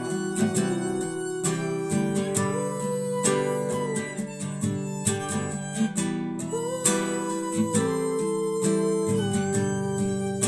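Acoustic guitar strummed steadily under an instrumental melody of long held notes, an amateur violin line that twice slides up to a higher note and holds it.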